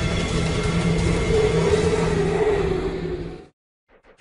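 Offshore racing powerboat engines running at speed: a steady drone that fades out about three seconds in.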